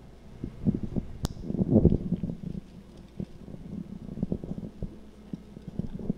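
Handling noise from a handheld microphone being carried over and passed to a new speaker: irregular low thumps and rubbing, with one sharp click about a second in.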